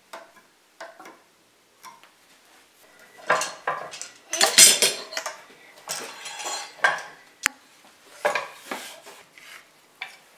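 Steel woodworking clamps (F-clamps and locking C-clamps) being handled and tightened on a wooden assembly: metal clinks and rattles, a few separate clicks at first, then busier clatter that is loudest around the middle, with one sharp click a little past halfway.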